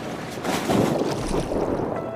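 Wind buffeting the microphone over a choppy sea on a small dive boat, a rough, steady rush that grows louder about half a second in.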